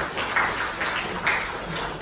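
An audience applauding: many hands clapping at once.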